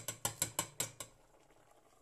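A white bowl knocked against the rim of a metal cooking pot about six times in quick succession to shake the last chopped celery and leek into the pot.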